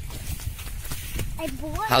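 Footsteps of someone walking over ploughed, stubbly soil, with a low irregular rumble on the microphone. A man's voice starts near the end.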